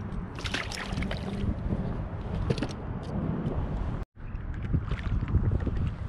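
Wind buffeting a small action-camera microphone over water against a kayak, a steady low rumble and hiss, with a few sharp splashy clicks in the first second. The sound drops out completely for a moment about four seconds in, then the same wind and water noise resumes.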